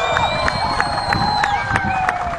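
Spectators at a football match shouting and cheering, with long drawn-out calls held over the general noise of the crowd.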